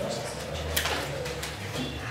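Low, indistinct murmur of voices in a meeting room, with a sharp paper rustle or click a little under a second in.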